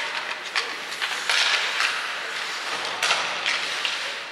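Hockey skates scraping and carving on the ice, with a few sharp clacks of sticks and puck.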